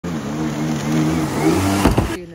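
Stand-up jet ski engine running hard at speed, with the hiss of water spray, its pitch rising somewhat in the second half. A short loud burst comes near the end.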